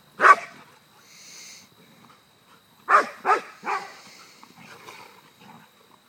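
Bouvier des Flandres barking while play-fighting: one loud bark just after the start, then three quick barks in a row about three seconds in.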